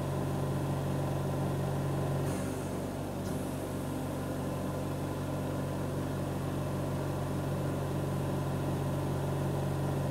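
Steady hum and hiss of a lampworking bench: a propane-oxygen torch flame burning while an oxygen concentrator runs.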